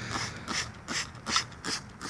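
Hand trigger spray bottle pumped repeatedly, about five quick squirts a little over two a second, each a short hiss of spray with the click of the trigger mechanism.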